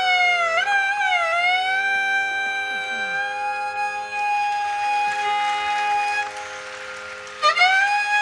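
Carnatic violin playing a melody with wavering, sliding ornaments (gamakas), settling into one long held note, then dropping softer before sliding back up near the end, over a steady drone.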